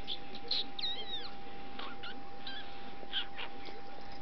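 A kitten gives one brief, high, bending mew about a second in, amid short scratchy sounds from its play on the bedding.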